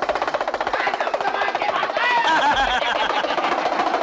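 Damru (dugdugi), the small hourglass hand drum of a street monkey-showman, rattled in a fast continuous roll, with a voice calling over it in the second half.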